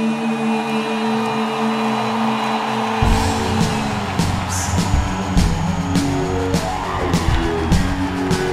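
Live band music from a pop-rock song: a held chord with the bass and drums dropped out, then bass and drums come back in about three seconds in with a steady beat.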